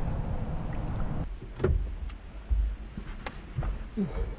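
Steady rush of wind and moving river water on the microphone, dropping away after about a second to quieter water noise with a few scattered knocks and low thumps.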